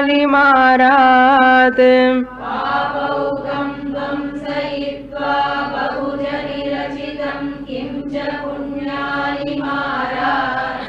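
Sanskrit verse chanted on a steady, held pitch by a single woman's voice. About two seconds in, a group of voices chants the line back in unison.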